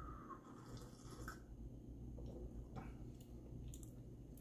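A faint sip of hot chocolate from a mug in the first second or so, followed by a few faint clicks.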